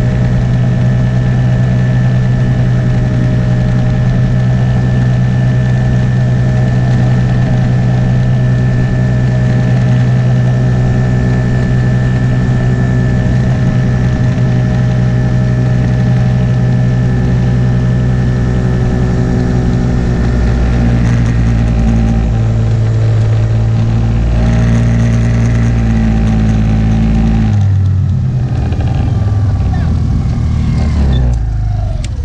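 Small engine of a ride-on motor vehicle running at a steady pitch as it is driven along. About two-thirds of the way through the pitch drops and wavers as it slows, and it changes again shortly before the end.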